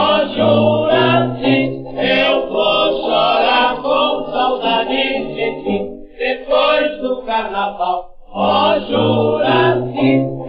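A 1931 gramophone recording of a Brazilian carnival march played by a dance orchestra, with a thick, muffled old-record sound and a firm bass line. The music thins briefly about six seconds in and again about eight seconds in.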